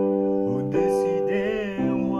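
Chords played on a Yamaha portable keyboard with a piano sound. A new chord comes about three-quarters of a second in and another near the end, and a voice sings a wavering held note over them in the middle.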